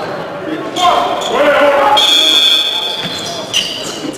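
Live basketball game in a large, echoing gym: a ball bouncing on the hardwood court amid players' and spectators' voices, with a steady high squeal lasting about a second halfway through.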